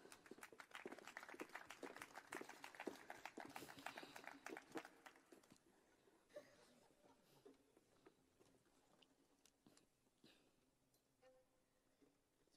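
Near silence, with faint rapid clicking for the first five seconds that thins out into a few scattered ticks.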